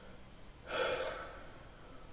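A person's single audible breath, a noisy exhale or sigh about a second in, swelling quickly and fading over about half a second.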